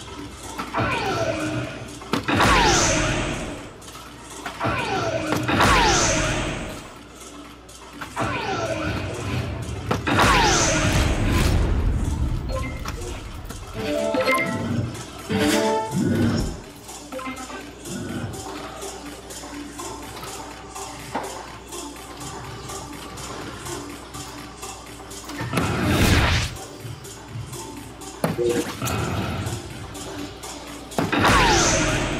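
Electronic soft-tip dartboard sound effects as darts land, each a short falling electronic tone, several in quick succession, over steady background music. A loud sudden burst sounds about four seconds before the end.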